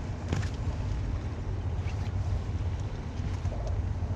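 Wind buffeting the microphone, a steady low rumble, with a sharp knock about a third of a second in and a few faint taps later.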